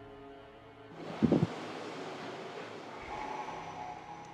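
Soft background music, then a steady hiss of room or location noise that starts about a second in, with one brief loud sound just after it starts.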